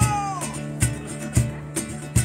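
A Bengali folk song played live on strummed acoustic guitars and a cajon. A man's long held sung note slides downward and ends about half a second in, while the cajon keeps steady beats about every half second.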